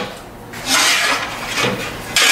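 Steel plate sliding and scraping on the steel bed of an ironworker as it is shifted into position, metal on metal, one scrape of about half a second in the middle.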